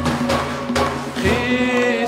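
Persian frame drums (dafs) beating over sustained instrumental notes, and a male voice entering about a second in, sliding up into a held sung note in Persian classical style.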